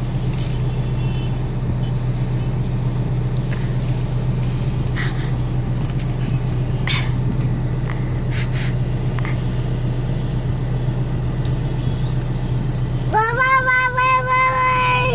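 Steady low hum of a car's interior throughout, with a few faint short knocks and rustles. Near the end a young child's voice holds one long high note.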